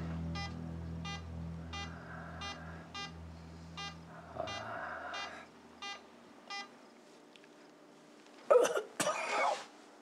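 A hospital patient monitor beeps steadily, a short pitched beep repeating at an even pace, over low background music that fades out about halfway through. Near the end comes a brief, loud, cough-like breath.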